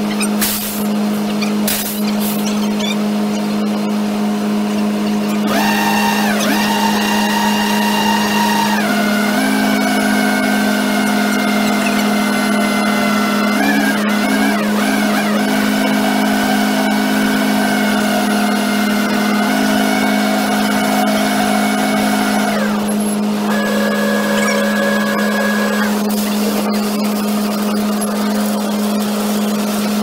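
Steady drone of a concrete mixer truck running while it discharges concrete down its chute. A constant low hum sits under higher whining tones that shift to new pitches every few seconds.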